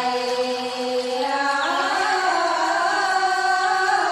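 Women singing a slow folk love song in long, drawn-out held notes, the voices moving up to a higher note about one and a half seconds in.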